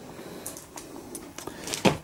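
Laserdisc jackets being handled: a few faint clicks and rustles over a low steady hum, with a sharper knock near the end.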